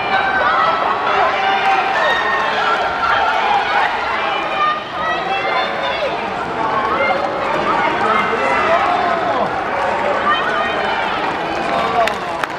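Voices carrying across an athletics stadium, calling and shouting without a break, with a brief dip in loudness about five seconds in.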